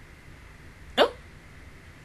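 One brief, sharp vocal sound about a second in, sliding quickly upward in pitch.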